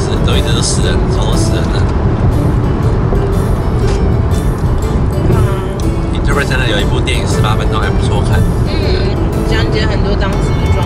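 A man talking over background music, with the steady low rumble of a car driving heard from inside the cabin.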